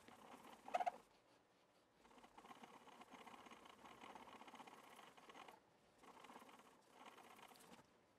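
Faint rubbing of a cloth worked back and forth over a bass guitar's fingerboard and frets, buffing in polishing compound, in several passes with short pauses. A single sharp tap about a second in.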